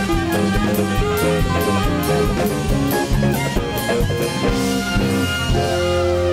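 Live band playing an instrumental passage: trumpet, clarinet and saxophone carry the melody over a steady drum-kit beat.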